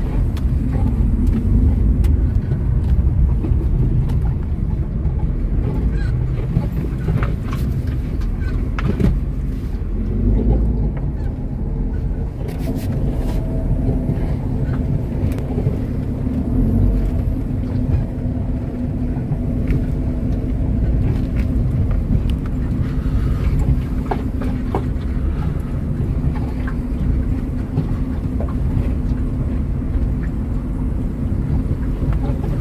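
Inside a car driving slowly over a rough unpaved stone road: a steady low rumble of engine and tyres, with a few short knocks from the road surface, mostly early on and once near the end.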